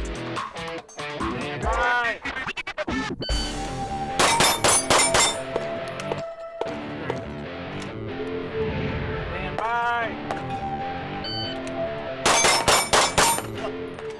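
Two quick strings of pistol shots at steel plates, each lasting about a second: one about four seconds in, the other near the end. Each string follows a short, high electronic shot-timer beep, and music plays underneath throughout.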